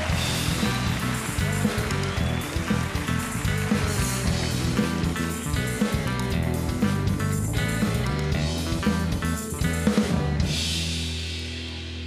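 Live band playing upbeat walk-on music with a drum kit and steady bass, with drum hits throughout. About ten seconds in it ends on a held chord under a cymbal crash.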